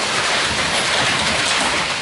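Steady rushing hiss of the pig barn's ventilation air, even and unbroken, with no distinct events in it.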